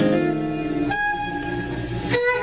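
Archtop jazz guitar playing sustained chords: a chord is struck at the start and rings, then a new chord comes in about a second in and is left to ring.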